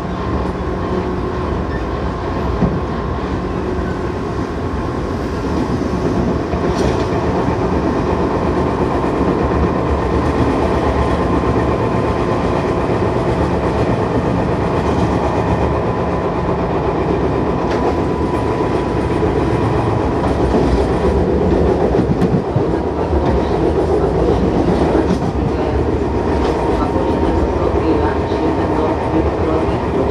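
Tobu 10000 series electric train running at speed, heard from inside the car: a steady running rumble of wheels on rail with a thin steady tone over it, growing a little louder about six seconds in.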